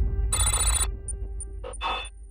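Film-trailer sound design over a low rumbling drone: a short, bright ringing sound about a third of a second in, then faint high ticks about three times a second and two short hits near the end.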